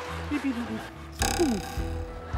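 A man's voice giving a loud, abrupt 'beep' call, mimicking a bird, about a second in. Background music plays throughout.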